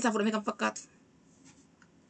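A person speaking, ending less than a second in, then a pause with nearly no sound.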